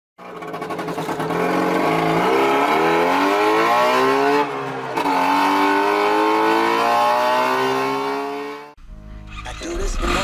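Engine sound effect revving up in two long runs, its pitch climbing steadily through each, with a short break between them. It cuts off near the end and gives way to a low rumble.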